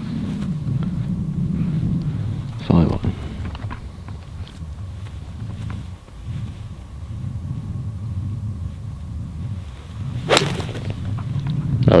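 Wind rumbling on the microphone, with a short thump about three seconds in. About ten seconds in comes one sharp, very brief crack: a 5-iron striking a golf ball from a fairway lie.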